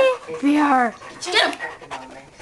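A large dog panting close to the microphone, with short voice-like sounds from the people around it.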